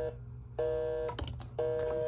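Telephone busy signal from a hotel room phone on speaker: a steady two-note tone, about half a second on and half a second off, repeating about once a second. It signals that the line is engaged and the call is not going through.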